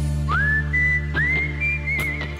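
Whistled melody with high notes that slide up into each phrase and waver near the end. A live band's sustained low bass and keyboard chord sounds underneath.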